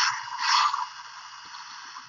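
Built-in electronic sound effect of a Transformers Go! combiner toy, its combining sound, played through the toy's small speaker. It is a thin, noisy rush with no bass that swells again about half a second in, then fades away.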